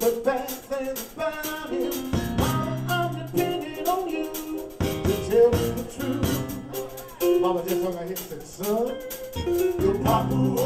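Live band playing an upbeat 1950s-style R&B number: drum kit keeping a steady beat under bass and keyboard, with singing voices.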